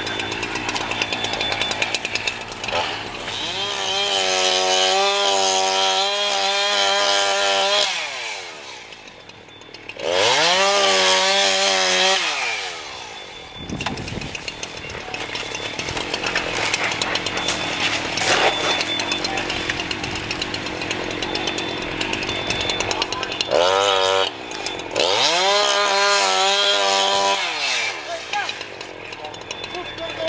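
Firefighter's gas-powered saw cutting through a house's shingled roof to vent the fire. It revs up, rising in pitch, and runs at full speed in three long bursts: about four seconds in, again around ten seconds, and near the end.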